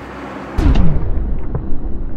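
Wrecking ball smashing into a brick wall: a swelling rush, then a sudden heavy crash about half a second in, followed by a deep rumble with the clatter of breaking bricks.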